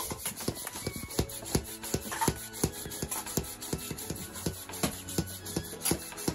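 Small plastic hand pump worked in quick, uneven strokes, about two to three a second, inflating a plush-covered inflatable unicorn toy, with the fabric rubbing and scuffing at each stroke.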